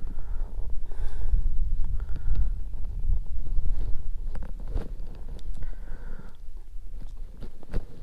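Wind buffeting the microphone, a deep irregular rumble that eases off in the last few seconds. Scattered small clicks and knocks come from hands handling a caught bass and working a lure free of its mouth.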